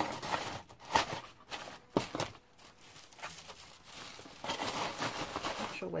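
Rustling and crinkling of packaging as items are packed back into a cardboard box. There are a few sharp knocks about one and two seconds in, and denser crinkling near the end.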